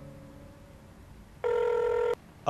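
Telephone ringing: one steady electronic ring starts about a second and a half in, the loudest sound here. Before it, a held musical note fades out.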